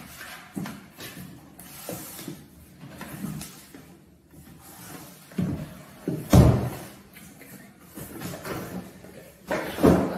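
Cardboard boxes being handled: scraping and rustling as a rigid cardboard shoe box is drawn out of its outer box and set down on a wooden table, with a few dull knocks, the loudest about six seconds in.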